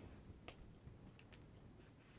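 Near silence: room tone with a few faint short clicks, about half a second in and twice more a little past a second.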